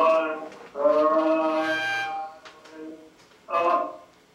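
Voices singing in long held notes, strong for the first two seconds, then fading, with one short loud note near the end.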